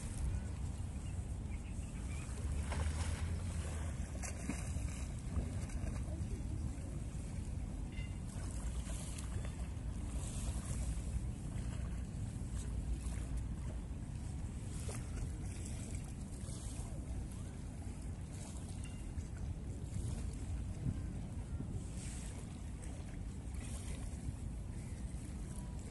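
Wind buffeting the microphone over a steady low rumble.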